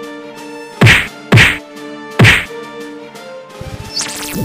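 Three loud, heavy thuds added as sound effects, two close together about a second in and a third just after two seconds, over steady background music.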